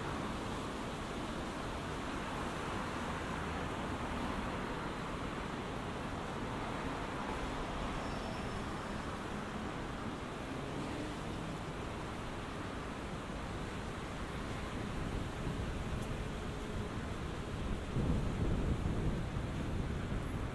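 Steady city-street background noise, a continuous hum of traffic and the street, with a louder low rumble for the last two seconds or so.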